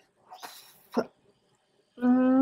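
A woman's breathy exhale and a short strained vocal sound of disgust about a second in.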